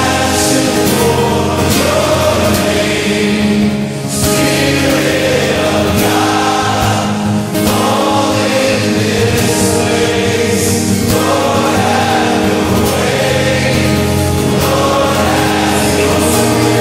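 Contemporary Christian worship music played by a band, with many voices singing together in a choir-like sound.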